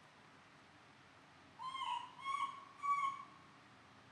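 Three short, pitched animal calls in quick succession, each about half a second long, starting about a second and a half in.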